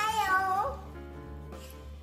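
A young child's high sung note, bending in pitch and lasting under a second, over a children's song backing track; the backing music then carries on alone.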